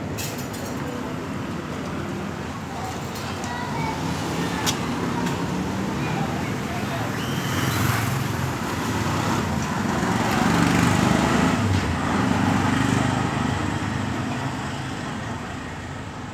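Steady motor-vehicle and traffic rumble with indistinct voices mixed in, swelling louder about halfway through and easing off near the end.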